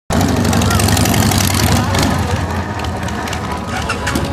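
Two V-twin motorcycles, a Suzuki Intruder and a Harley-Davidson Sportster, running loud at a drag-strip start line, the sound easing slightly after about two seconds.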